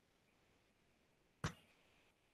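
Near silence broken by one sharp click about one and a half seconds in.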